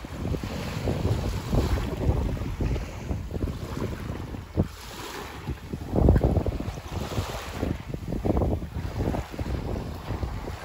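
Wind buffeting the microphone in uneven gusts, the strongest about six seconds in, over small waves lapping on a sandy shore.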